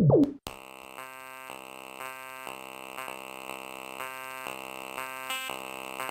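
Farbrausch V2 software synthesizer playing a bright, sustained chord of steady tones, with the notes struck again about twice a second. It starts about half a second in, after the tail of a falling-pitch synth kick.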